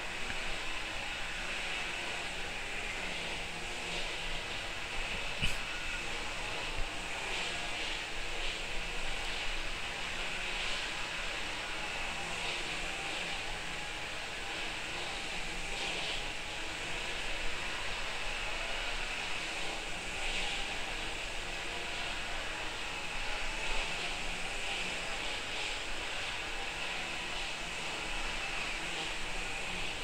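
Steady background hiss with faint, irregular light taps of a paintbrush dabbing acrylic paint onto paper in short, light strokes.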